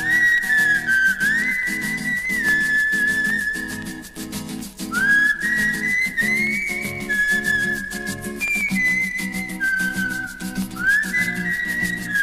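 Instrumental intro of a Malay pop song: a high, whistled lead melody scoops up into several of its notes over a band playing chords, bass and a steady beat.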